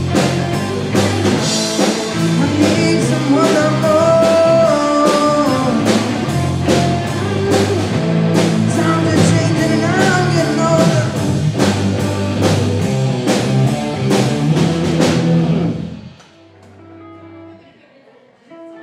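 Live rock band playing: electric guitars, bass guitar, a Pearl drum kit and a sung lead vocal. The song stops about sixteen seconds in, leaving a few quiet held guitar notes.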